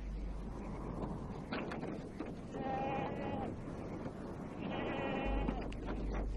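A sheep bleating twice, each call under a second long and held at a steady pitch, over a low background murmur.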